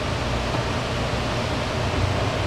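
Steady rushing air noise of a running electric fan, with a low hum underneath.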